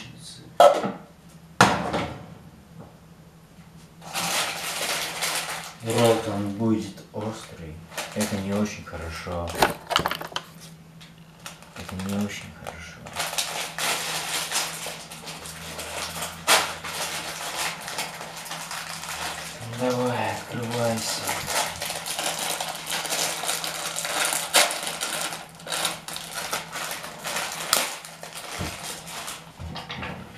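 Kitchen handling noises: dishes and utensils clattering, with many sharp knocks and clicks, and a man's low muttering now and then.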